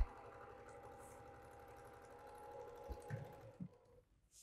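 Electric sewing machine running steadily at speed, faint, with a fast even clatter of stitching, stopping just before the end. A couple of soft knocks about three seconds in.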